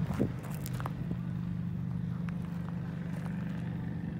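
A steady low hum from a running engine or motor, with a few crunching steps on gravel in the first second.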